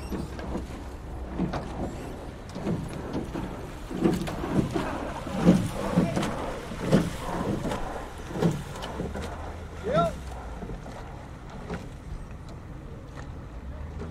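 Rowing boats on water: a run of knocks and splashes from oar strokes, roughly a second apart, with a short rising call about ten seconds in.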